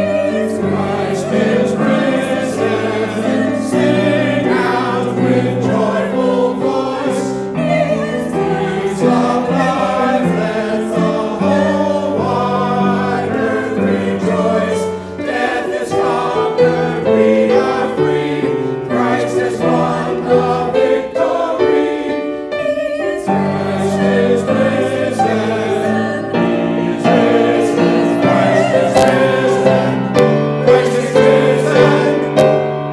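A mixed church choir of men's and women's voices singing an anthem in sustained chords.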